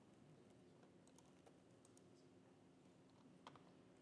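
Faint computer keyboard typing: a scatter of quiet, irregular key clicks, with a slightly louder click or two near the end.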